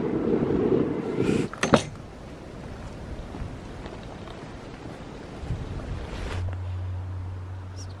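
Wind buffeting the microphone, a loud low rumble that cuts off suddenly about a second and a half in. It leaves a quieter steady outdoor hiss, and a low steady hum starts about six seconds in.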